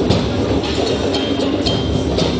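Percussion ensemble drumming a fast, steady rhythm, with a large bass drum and hand drums, and a short high ringing note sounding every so often.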